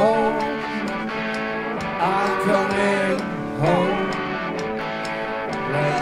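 Live rock band playing a song with guitars; melodic phrases that bend in pitch come in at the start, about two seconds in, and again near four seconds.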